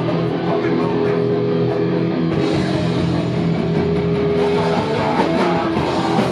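A hardcore punk band playing live and loud: distorted electric guitars and bass holding heavy chords over drums.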